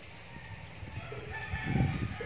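A rooster crowing, one drawn-out call that starts about a second in, with a low knock of handling near the end.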